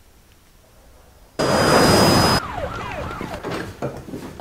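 Near silence for about a second, then a sudden loud burst of noise with a steady high-pitched ringing tone that cuts off after about a second, followed by wailing sirens gliding down in pitch.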